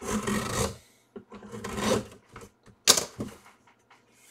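Cardboard box being slid and opened by hand: two stretches of cardboard scraping and rubbing, then a single sharp snap about three seconds in.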